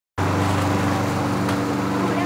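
A steady, even motor hum that starts just after the beginning and holds one unchanging pitch, with a couple of faint clicks.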